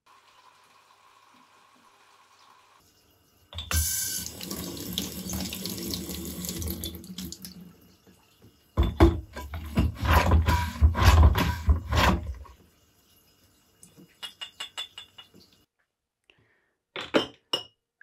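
Water spraying up into an upturned glass beer bottle on a bottle rinser over a stainless steel sink. It comes in two bursts of a few seconds each, the second louder and fuller, followed by a quick run of short clicks and a couple of sharp knocks near the end.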